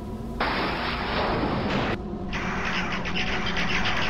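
Sound effects: a noisy crackling blast of about a second and a half, then a rapid chattering and fluttering of a swarm of bats, over a low music drone.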